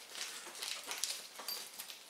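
Faint clicks and rustling of small first aid kit items being handled, with a brief high squeak about one and a half seconds in.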